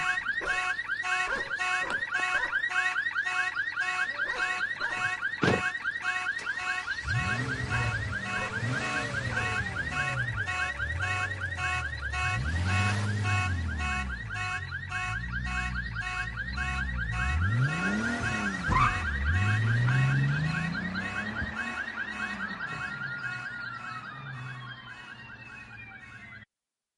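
Car alarm going off: a fast-repeating electronic tone, with lower swooping tones coming and going beneath it, fading out near the end.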